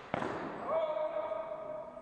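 A sharp hit from a fencing bout with swords, followed by a loud shouted call held for over a second, rising in pitch at its start.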